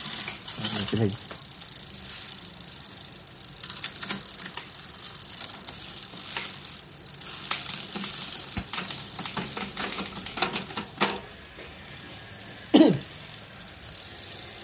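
The chain of a mountain bike's 27-speed Shimano drivetrain running over the cassette and chainrings as the cranks are turned by hand, with the rear freewheel ticking. From about eight to eleven seconds in there is a quick run of sharp clicks and rattles.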